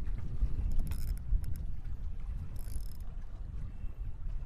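Wind buffeting the microphone, a steady low rumble, with a few faint clicks about a second in and a brief high hiss near three seconds.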